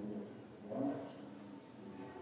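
Faint, echoing speech from a recorded video played over a hall's loudspeakers, loudest about a second in.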